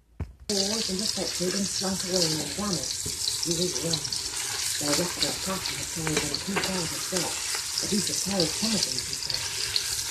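Chunks of meat frying in fat in a stainless steel pot, sizzling steadily, stirred and turned with a silicone spatula. The sizzle starts suddenly about half a second in.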